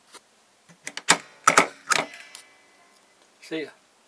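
Heavy-duty all-metal Swingline desk stapler being worked: a quick run of sharp metallic clacks with a little ringing, loudest between about one and two and a half seconds in.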